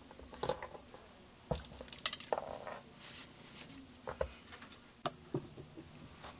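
Metal parts of a dismantled Robinair two-stage vacuum pump clinking and knocking as they are handled: a scattered run of sharp clicks, with a brief scraping sound about two and a half seconds in.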